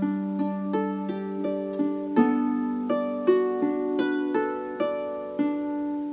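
Double-strung harp plucked in a steady syncopated phrase, about three notes a second, each note ringing on under the next, with some plucks made by both hands at once.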